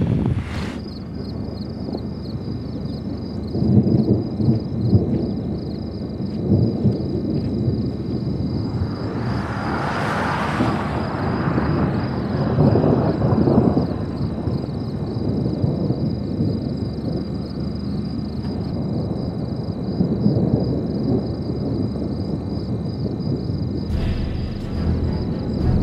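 Outdoor storm sound under a severe thunderstorm: wind gusting on the microphone with low rumbles that come and go, and a swelling hiss about ten seconds in. A faint steady high whine runs underneath.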